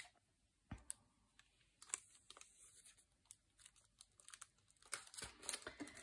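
Faint, scattered crinkles and ticks of clear plastic stamp packaging being handled, busier in the last second as the packet is put down.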